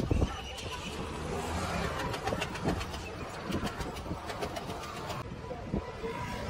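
Steady background noise with indistinct voices and many faint clicks, and a thump right at the start. The higher sounds drop away abruptly about five seconds in.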